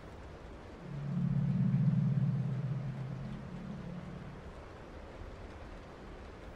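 A low, steady hum that swells in about a second in and fades away by about four and a half seconds.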